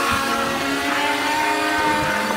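A steady rushing noise laid over background music, starting and stopping abruptly as a cut in the audio.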